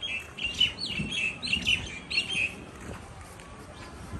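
A bird chirping: a quick run of short, repeated notes for the first two and a half seconds, then stopping.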